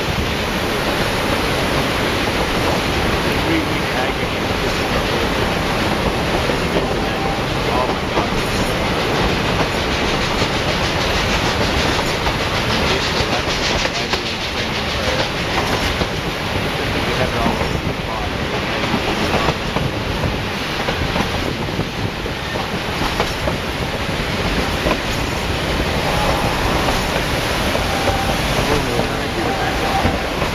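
Narrow-gauge passenger train running along the rails, heard from on board: a steady rumble with wheel clatter.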